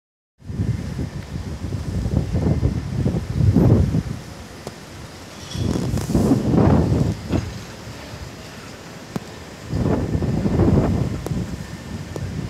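Strong gusty wind buffeting the phone's microphone, coming in three loud surges over a steady lower rumble.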